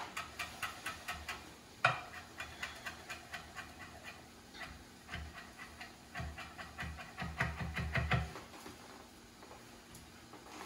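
Chef's knife chopping parsley on a wooden cutting board: quick, even knocks of the blade against the wood at about four a second, with one sharper knock about two seconds in and a faster, heavier run of chops before they stop near the end.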